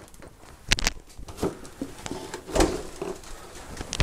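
Handling noise: a few soft knocks and bumps as the RC truck or the camera is shifted around. The strongest knock comes about two and a half seconds in.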